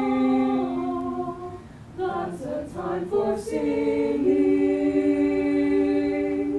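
Mixed-voice high school choir singing a cappella. Held chords move in steps, dip briefly about a second and a half in, pass through a quicker phrase with crisp consonants, then settle onto a long sustained chord.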